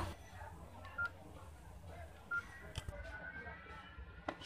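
Key tones of a Samsung Duos keypad mobile phone as its buttons are pressed: two short, faint beeps, the first about a second in and the second over a second later, with a faint click or two near the end.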